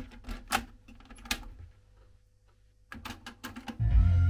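Plastic clicks and clacks from handling a Denon double cassette deck's cassette door and transport, in two short runs with a quiet pause between them. Just before the end, music from the tape starts playing loudly.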